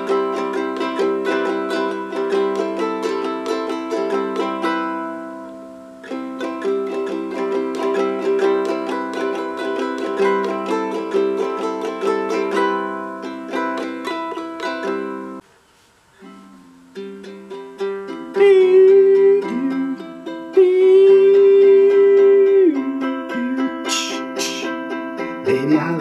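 Lanikai LQA-T tenor ukulele (solid spruce top, quilted ash back and sides, low-G tuning) strummed in chords. The playing breaks off briefly about two-thirds of the way in. From about 17 s a man's voice joins the ukulele with long held notes.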